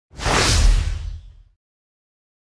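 Swoosh sound effect with a deep boom under it, used as an intro transition for the title card. It swells in quickly and dies away after about a second and a half.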